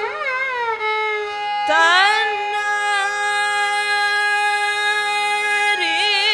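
A woman singing Carnatic classical music over a tanpura drone: quick ornamented turns in the voice, a swoop upward a little under two seconds in, then one long held note before the ornaments start again near the end.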